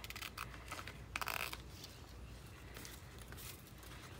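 Small scissors snipping through glossy magazine paper in a few quiet cuts, the clearest about a second in.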